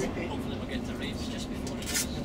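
Tour coach running along a city street, heard from inside the cabin: a steady low engine and road rumble, with people talking over it.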